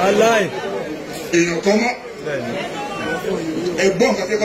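Speech: a man talking into a microphone, with chatter from the crowd around him.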